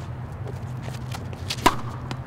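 A tennis racket hitting a ball once with a sharp pop about three-quarters of the way in, after two fainter knocks. A low steady hum runs underneath.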